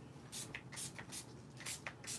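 A few faint, brief rustles and taps at irregular intervals: greeting cards and a spray bottle being handled on a tabletop.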